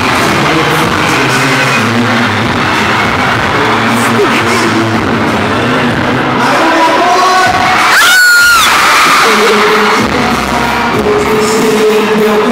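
Large crowd of fans screaming and cheering over loud music, with one sharp, piercing scream close to the microphone about eight seconds in.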